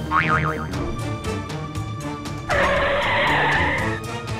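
Background music with edited-in sound effects: a brief wobbling, warbling tone right at the start, then from about two and a half seconds a loud, steady hissing noise lasting about a second and a half.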